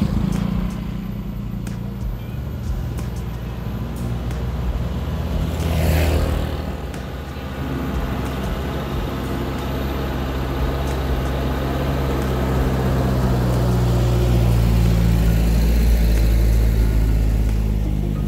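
A motor scooter rides past, then a small dump truck's engine drone grows steadily louder as the truck approaches along the lane and passes close, loudest near the end.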